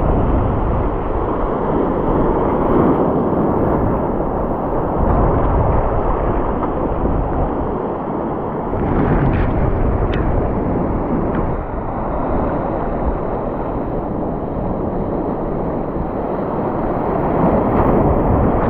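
Wind buffeting the camera microphone over surf breaking and washing across rocks, a steady loud noise throughout.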